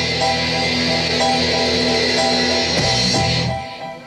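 Live rock band of electric guitar, bass, keyboards and drums playing one loud held chord, cut off together about three and a half seconds in.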